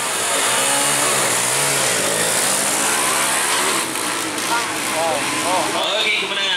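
Two stock Honda EX5 100cc four-stroke single-cylinder drag bikes launching off the line and revving hard as they accelerate away, their engine pitch climbing and dropping through the gear changes.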